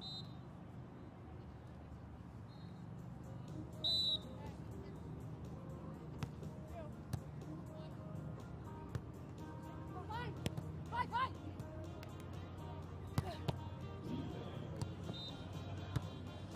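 Beach volleyball rally: a short referee's whistle blast about four seconds in, then several sharp slaps of hands on the ball for the serve, pass, set and attack, with players' short calls around ten to eleven seconds. Under it runs a steady low murmur of venue noise and background music.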